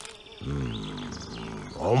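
A deep animated voice gives a low, wavering hum for about a second, then a short "um" at the end.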